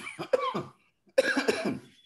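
A man coughing: a quick run of coughs at the start, then a second, longer bout about a second later.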